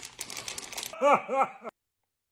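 A man's two short, pained wailing cries about a second in, each rising and falling in pitch, a reaction to the sourness of a sour candy ball. Before them come crackly clicking sounds, and the sound cuts off abruptly.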